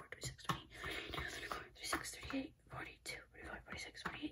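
A woman counting containers under her breath in a whisper, with light taps of her fingertips on small square flip-top plastic containers.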